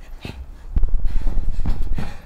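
A deep, growling, distorted laugh from a demonic voice. It grows loud about three-quarters of a second in, over a heavy low rumble.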